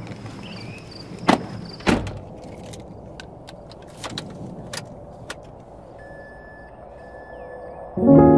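Non-musical ambient noise, a steady rushing hiss, with several sharp knocks or clicks, the two loudest about a second and a half and two seconds in. A faint steady high tone comes in near the end.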